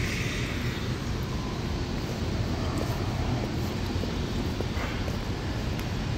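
Steady city street traffic noise, a low even rumble of vehicles at an intersection.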